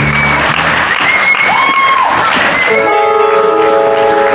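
Live concert crowd applauding and cheering, with shrill whistles over it. Low held notes from the previous music die away in the first half second. About three seconds in, a keyboard starts playing sustained chords.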